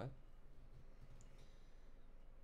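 Near silence: a low steady room hum, with faint handling of trading cards as one card is slid off another.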